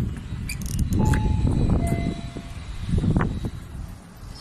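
Elevator chime sounding two steady tones about a second in, the second one lower and longer, over a heavy low rumble and a few clicks.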